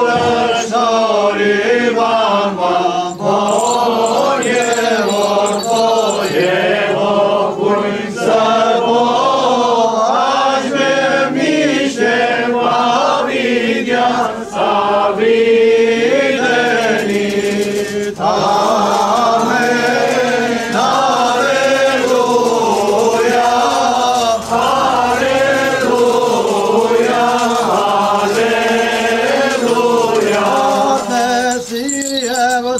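Armenian liturgical chanting, sung continuously as part of the Christmas blessing-of-water rite.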